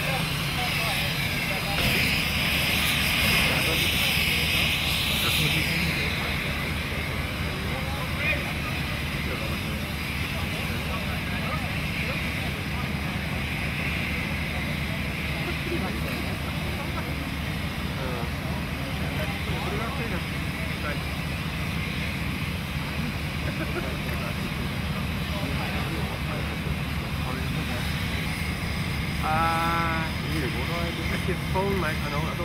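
A motor running steadily with a pulsing low drone throughout, joined by a hiss during the first few seconds. Faint voices are heard, with one briefly near the end.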